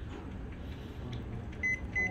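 Photocopier touch-panel key beeps: two short, high single-tone beeps in quick succession near the end as on-screen buttons are pressed, over the machine's steady low hum.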